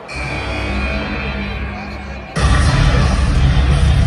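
Arena speakers playing a wrestler's entrance music as the Royal Rumble countdown reaches zero, signalling the next entrant. It opens with a sustained, low-pitched intro, then about two and a half seconds in the theme kicks in much louder.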